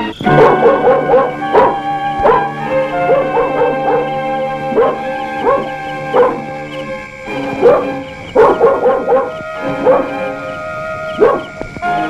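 A dog barking again and again in short bursts over sustained background music from the film score.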